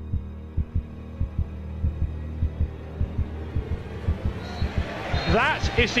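A heartbeat sound effect in a tense soundtrack: low double thumps repeating steadily over a low drone. The sound swells toward the end as a commentator's voice comes in.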